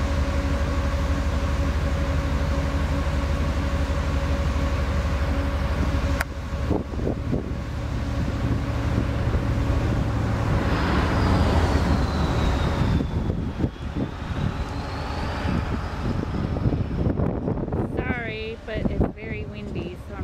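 Strong wind buffeting the microphone, with a steady motor hum under it for the first several seconds. The wind then turns gustier and rougher.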